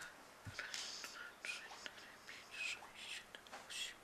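Faint whispering, several short hushed exchanges in a small room.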